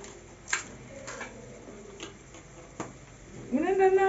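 Four sharp separate clicks spread over about three seconds, the first the loudest, as a spice grinder bottle is worked over a frying pan. A brief pitched, voice-like sound follows near the end and is the loudest thing.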